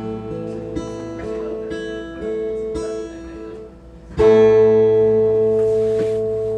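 Acoustic guitar picking a slow run of single notes, then a loud chord struck about four seconds in and left ringing, slowly fading: the closing chord of the song.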